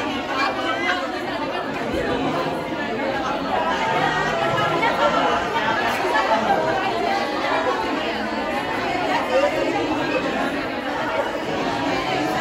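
Many people talking at once in a crowded room: a steady chatter of overlapping voices, with no single speaker standing out.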